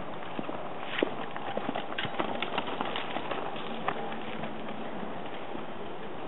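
Hoofbeats of a racking horse, a gaited gelding, moving at the rack: a quick, uneven run of footfalls that is loudest between about one and four seconds in, as the horse passes close by.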